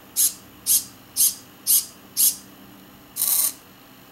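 Hobby RC servo panning a camera mount through a test sweep: five short whirs about half a second apart as it steps, then one longer whir a little past three seconds in.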